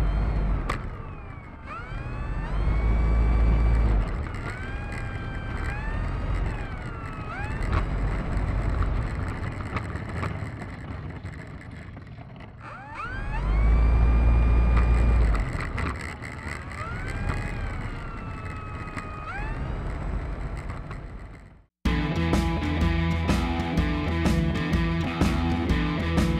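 Electric brushless motor and propeller of an E-flite Turbo Timber Evolution RC plane, heard from an onboard camera: a whine that rises and falls in pitch with the throttle, over a deep rumble that surges several times. About four seconds before the end the sound cuts off abruptly and rock music with guitar takes over.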